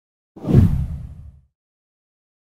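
A whoosh transition sound effect with a deep low body, swelling quickly about a third of a second in and fading out within a second.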